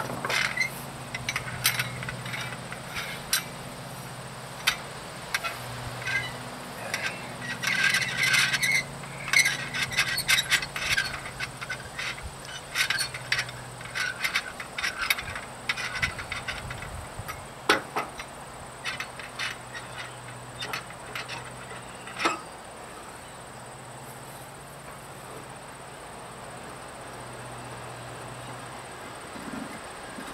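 Metal tools clinking, scraping and ticking against a trailer wheel hub as the wheel is fitted and its lug nuts are turned by hand with a wrench. Many quick clicks and clinks with a few sharper knocks, dying away about two-thirds of the way through. A faint low hum runs underneath.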